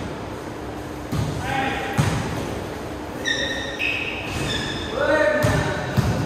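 A basketball thudding on an indoor court floor a few times, with short high sneaker squeaks in the middle and players' voices, all echoing in the hall.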